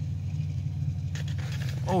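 A steady low mechanical drone, an even hum that holds without change, with faint handling noise from about a second in.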